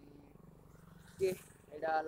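A young man's voice speaking a short word a little over a second in and starting to talk again near the end, after a pause that holds only a faint, low, steady hum.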